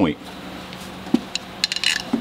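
A soft knock about a second in, then a quick run of light metallic clinks from a hand tool being handled against metal, over a low steady hum.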